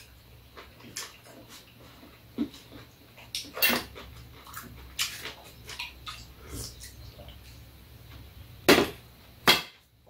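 Eating at the table: chewing and slurping, with scattered clicks of a spoon and chopsticks on dishes, and two louder short slurping noises near the end.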